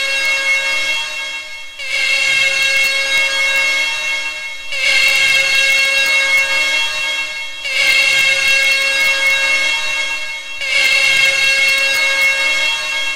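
A recorded soundtrack of held, siren-like tones, sounded as one chord that restarts in phrases about every three seconds, each phrase opening with a short low note.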